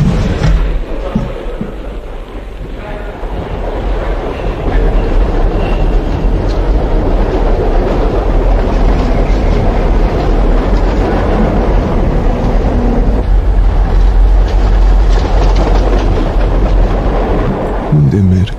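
Subway train running: a loud, steady rumble and rattle of the cars that swells about four seconds in and stays up.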